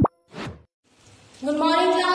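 Logo-animation sound effects: a quick rising blip, then a short falling whoosh. About a second and a half in, a voice begins, held on fairly steady pitches.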